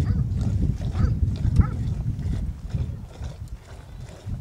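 Tethered goats giving a few short calls over a steady low rumble.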